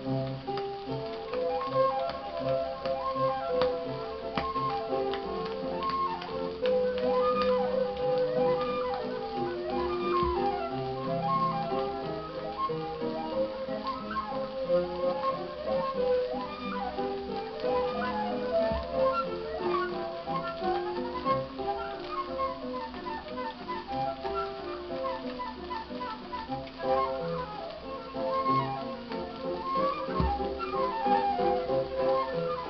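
Flute playing a melody over piano accompaniment, reproduced from a 1929 shellac 78 rpm disc on a turntable. Held notes give way to quick running passages from about ten seconds in.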